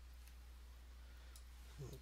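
Near silence: a steady low hum with two faint clicks about a second apart.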